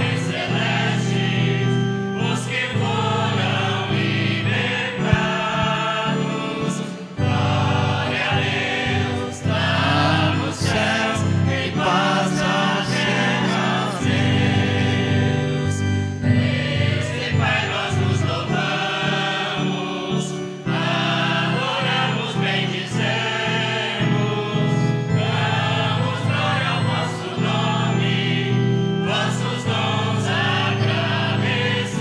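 Choir singing a liturgical hymn with sustained instrumental chords underneath, the bass changing every few seconds.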